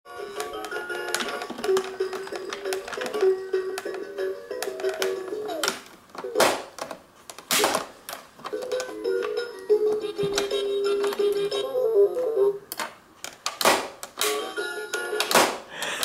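Electronic baby activity-table toy playing a simple, tinny electronic tune, with sharp plastic clacks as its flip-up lid is slapped open and shut. The tune breaks off twice, about six seconds in and again near twelve seconds, matching the toy going quiet when the lid is shut.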